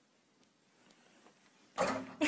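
Quiet room, then near the end a sudden loud vocal outburst from a person, a cry that breaks in abruptly.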